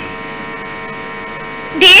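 Steady electrical mains hum, a buzz of many fixed tones that holds level through a pause in the talk; speech comes back in near the end.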